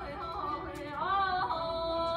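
A female voice singing Persian classical avaz in the Abu Ata mode, with quick ornamental pitch turns, a rising glide about a second in, and a held steady note near the end.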